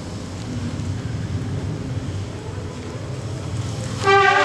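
A steady low rumble of background noise in a large, crowded hall, with no clear voices or music standing out.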